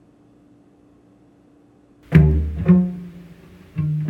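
Near-silent room tone, then about two seconds in a cello starts playing: two low notes with sharp attacks about half a second apart, each dying away, and a third note near the end.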